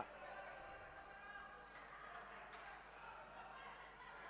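Faint sports-hall ambience: distant voices of players on the court, with a few soft knocks that may be ball or shoe contacts on the floor, heard under the paused commentary.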